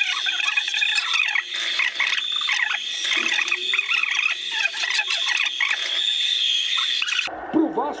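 Night-time nature ambience sound effect, a steady high cricket chirring with frog-like calls over it, cut in over the room sound and cutting off abruptly near the end.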